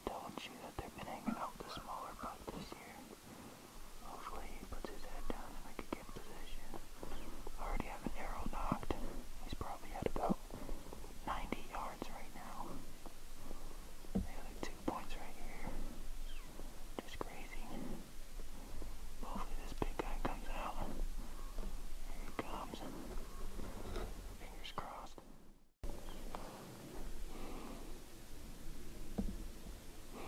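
A person whispering in short, broken phrases, with a brief dropout near the end.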